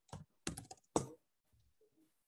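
Computer keyboard typing: a short run of keystrokes in the first second, finishing a search word and entering it, then quiet.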